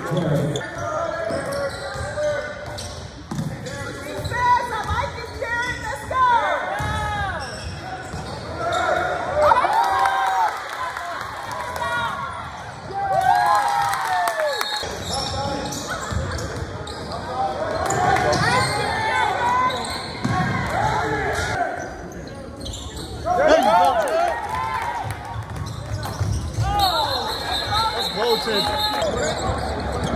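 Basketball game play on a hardwood gym court: sneakers squeaking in many short rising-and-falling chirps, the ball bouncing, and spectators' voices in the background. A short steady high tone sounds near the end.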